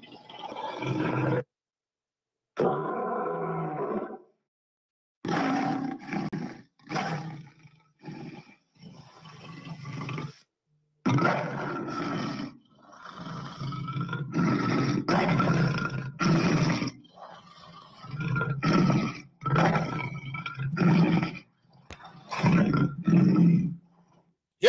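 A lion roaring over and over: a string of deep, drawn-out roars broken by short silences, with quicker, shorter calls near the end.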